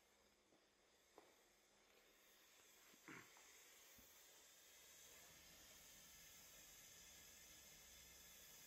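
Near silence: a faint steady hiss that grows slightly louder about two seconds in, with a few soft clicks.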